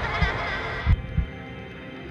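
Heartbeat sound effect: paired low thumps in a lub-dub rhythm, about once a second, over a steady hum. The thumps stop a little over a second in, leaving the hum.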